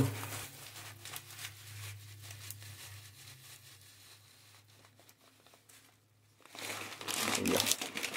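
Coarse salt pouring from a plastic bag into a plastic coolant reservoir: a faint crackle of grains and crinkling of the bag that fades away over the first few seconds. Louder plastic-bag crinkling near the end as the bag is lifted away.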